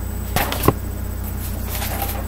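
A sheet of paper being handled, giving two quick rustles or flaps about a third of a second apart, over a steady low hum.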